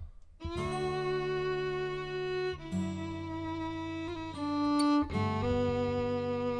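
Fiddle playing a slow ballad tune in long held notes, with acoustic guitar chords underneath, starting about half a second in.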